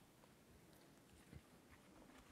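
Near silence: room tone, with one faint tap a little past halfway.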